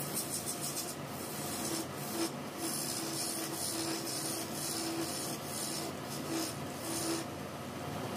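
Hand chisel cutting a large wooden rolling-pin (belan) blank spinning on a wood lathe, in repeated scraping strokes, about two a second, over the steady hum of the lathe. The cutting stops shortly before the end while the lathe keeps running.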